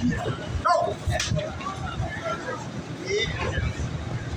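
Short shouts and voices from wrestlers grappling on a ring mat, with a couple of sharp knocks about a second in.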